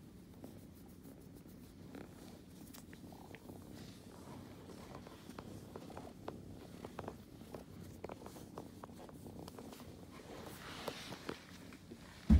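A ginger kitten purring faintly and steadily while being stroked under the chin, with scattered light clicks over it.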